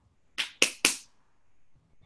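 Three sharp gunshot cracks in quick succession, about a quarter second apart, starting about half a second in: a gunshot sound effect.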